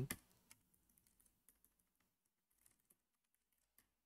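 Faint computer keyboard typing: about ten scattered keystrokes, with a short pause in the middle.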